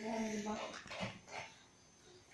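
A young child's long, level-pitched whine that ends about half a second in, followed by a couple of short vocal sounds.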